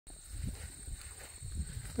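Footsteps of a person walking outdoors: soft, dull thuds about once a second, with a faint steady high-pitched tone running underneath.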